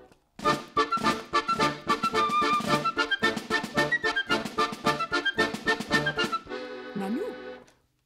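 Small instrumental ensemble playing a brisk interlude of short, quick notes, which settles into a held chord near the end, where a voice says "Na".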